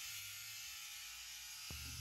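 Sheep-shearing handpiece on a flexible drive shaft running through matted wool, a faint steady buzz. A single sharp knock comes near the end.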